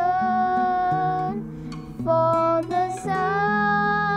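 Singing accompanied by strummed acoustic guitar: a high voice holds long notes, with a short break in the middle, over guitar chords.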